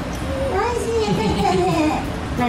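A toddler's high-pitched voice talking, starting about half a second in, over a low steady background hum.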